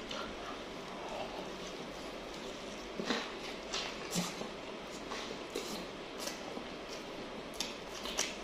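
Close-miked eating sounds of a man chewing ayam kremes, fried chicken with crispy fried crumbs, eaten by hand: faint, with a scattering of short soft clicks and smacks from the mouth and fingers over a steady low hiss.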